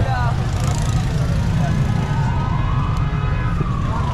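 Busy street-market noise, a low traffic rumble under crowd hubbub, with a siren wailing once through the middle, rising slowly and then falling away near the end.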